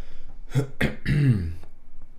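A man clearing his throat: two short rasping bursts, then a longer voiced sound that falls in pitch.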